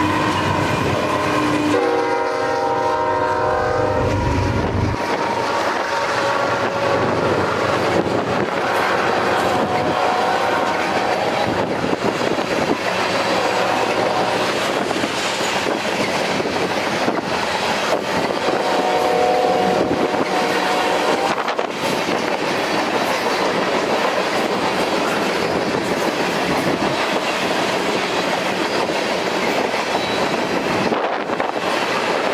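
BNSF freight train led by GE ET44C4 diesel locomotives passing close by. The locomotive horn sounds for the first four seconds or so, and its chord changes about two seconds in. The locomotives' engines go by, and then a long string of tank cars and hoppers rolls past with steady wheel rumble and clickety-clack over the rail joints.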